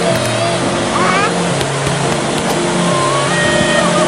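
Edited meme soundtrack: background music with a loud, steady rushing noise layered over it, and a brief rising glide about a second in.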